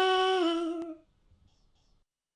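A cartoonish singing voice holds the last wordless note of a 'la la' birthday tune, dips slightly in pitch, and stops about a second in.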